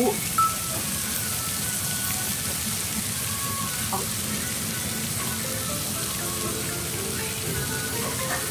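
Steak and bean sprouts sizzling steadily on a hot iron serving plate, an even hiss that carries on without a break.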